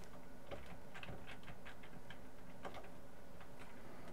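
Light, irregular clicks of computer keys being pressed, about three a second, over a faint steady hum.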